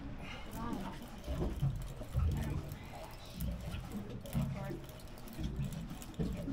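Faint, indistinct talking over a low background rumble.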